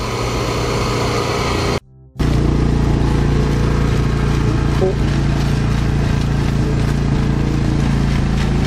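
Engine of a Mitsubishi LKV6 paper-mulch rice transplanter running steadily as it plants, a constant low hum. The sound drops out briefly about two seconds in.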